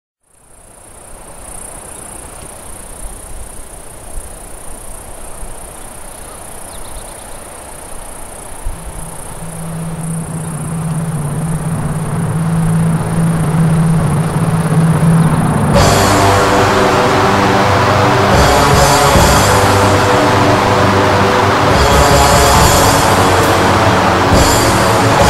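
Opening of an instrumental atmospheric black metal track: a quiet, hissing ambient intro that swells gradually, with a low sustained note joining about nine seconds in. About sixteen seconds in, the full band comes in suddenly, loud and dense, with distorted guitars and drums.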